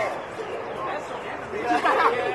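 Indistinct chatter of several people talking at once, with one voice rising louder near the end.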